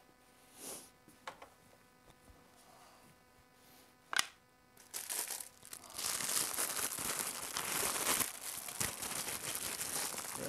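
Packaging of a new air filter crinkling and tearing as it is unwrapped by hand, starting about halfway through. Before that it is near quiet, with a few faint knocks and one sharp click.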